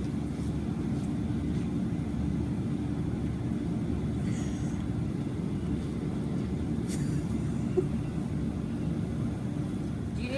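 Steady low rumble of outdoor background noise with a faint steady hum and no clear events.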